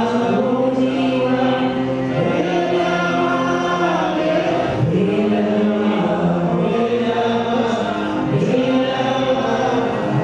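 A group of voices chanting mantras together in long, sustained lines, with the pitch gliding up and down now and then.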